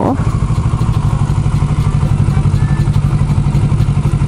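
Kawasaki Ninja 650's parallel-twin engine running steadily at low revs as the motorcycle rolls slowly along.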